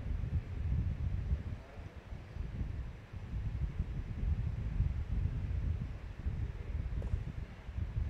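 Wind buffeting an outdoor microphone: an uneven low rumble that swells and dips.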